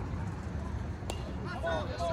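A bat hitting a baseball once, about a second in: a sharp crack with a brief high ring. Spectators and players start yelling and cheering just after it.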